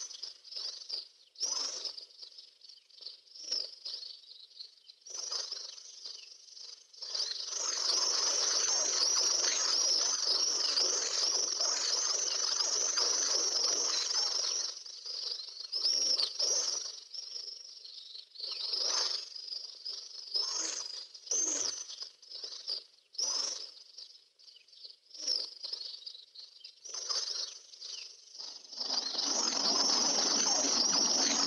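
Many small birds chirping. The chirping is dense and continuous for several seconds about a quarter of the way in, and comes in scattered bursts the rest of the time.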